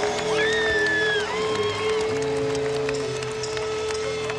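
A live rock band holding a sustained note, with pitches sliding up and down above it, over crowd noise and applause from the concert audience.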